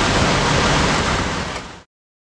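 Steady rushing outdoor noise with a low engine hum underneath, cut off suddenly near the end.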